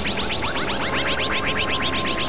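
Experimental electronic synthesizer music: a rapid stream of short upward-sweeping blips, about ten a second, over a dense, noisy low drone. A steady held tone enters about halfway through.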